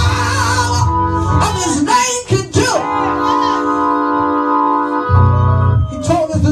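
Woman singing into a hand microphone over electric organ accompaniment. About halfway through the organ holds a long steady chord, and a low bass note comes in near the end.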